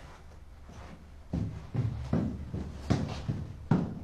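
Footsteps on a stairwell: after a quiet start, about five thuds at uneven spacing in the second half.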